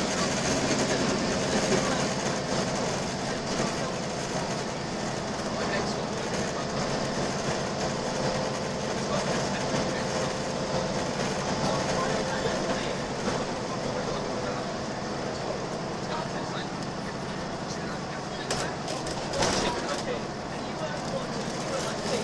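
Inside a Volvo B10BLE single-deck bus running at speed: steady engine drone and road noise, with a few short rattles near the end.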